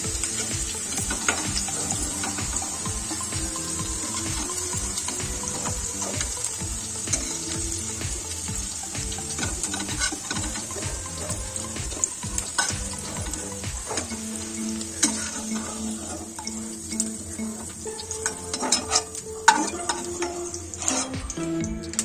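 Fried cauliflower and potato pieces sizzling in hot oil in a non-stick kadhai while a metal spatula scoops them out, with frequent light clicks and scrapes of the spatula against the pan.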